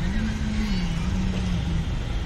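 Steady low outdoor rumble, with a distant voice held on one wavering pitch that fades out near the end.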